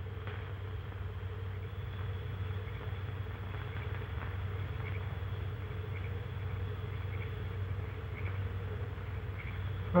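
Steady low hum and hiss of an old optical film soundtrack, with no distinct sound events.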